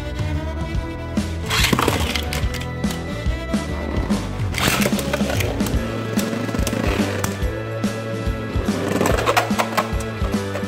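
Background music with a steady beat, over Beyblade spinning tops whirring and clattering against each other and the clear plastic stadium, with sharp clicks of hits.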